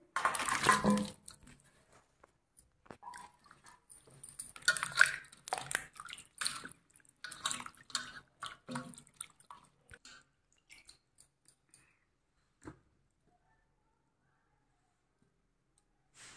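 Raw chicken feet tipped from a steel plate into a steel bowl of water with a splash, then hands rubbing and swishing them in the water in short, irregular splashes. The splashing stops after about ten seconds, and a single knock follows near the end.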